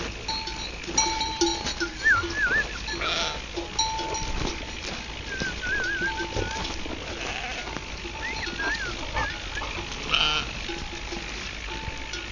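Bells on a flock of sheep clanking and ringing over and over as the flock walks, with a few wavering sheep bleats over them.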